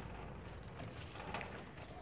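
Faint, steady hiss of flowing water used for watering potted orchids.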